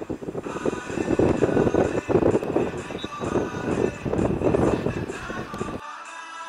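Loud, gusty outdoor noise on the microphone, typical of wind buffeting it, with background music with a steady beat coming in faintly underneath. The outdoor noise cuts off suddenly just before the end, leaving only the music.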